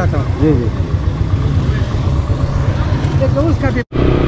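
Motorcycle engine idling with a steady low rumble, with brief snatches of a man's voice over it. The sound breaks off abruptly near the end.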